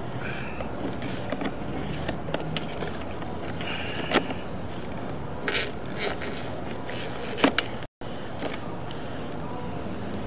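Sewer inspection camera's push cable being pulled back out of a clay-and-PVC sewer line through the cleanout: scattered clicks, knocks and scrapes over a steady outdoor background noise.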